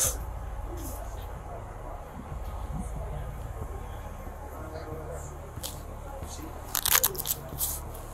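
Scratchy rustling and crackling on a body-worn police camera's microphone, with a louder cluster of sharp crackles about seven seconds in, over a low steady rumble.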